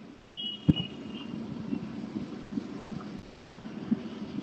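Low, uneven rumble of a car interior picked up by a video-call participant's open microphone. About half a second in there is a short high beep, and a sharp click comes just after it.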